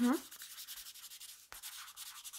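Pen writing on paper: a fine, continuous scratching of quick strokes, with a small tap about one and a half seconds in.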